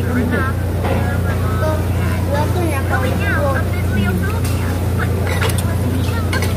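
Restaurant dining-room ambience: a steady low hum under people chatting, with a few clinks of cutlery on dishes in the second half.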